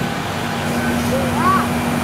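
Flatbed tow truck running with a steady hum while it winches a minivan up its tilted bed. A short voice sound rises and falls about a second and a half in.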